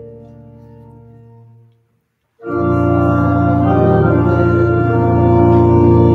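Church organ playing held chords: a soft chord fades away, then after a short break the organ comes back much louder with a full, sustained chord.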